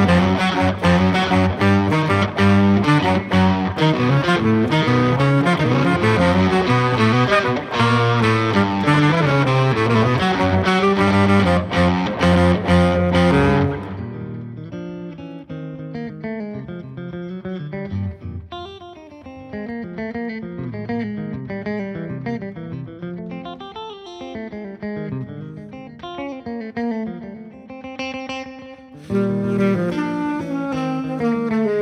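Electric guitar music from a Telecaster: a loud, dense, distorted passage that cuts off suddenly about 14 seconds in, then quieter single-note playing. Near the end a C-melody saxophone comes in and the music gets louder again.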